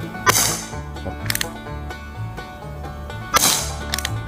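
Two shots from a CO2 BB revolver, one just after the start and one near the end, each a sharp crack with a short fading tail. A lighter double click comes about a second after the first shot, and background music plays underneath.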